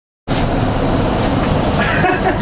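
Silence, then about a quarter second in the airflow of a vertical wind tunnel cuts in abruptly: a loud, steady rush of air and fan noise.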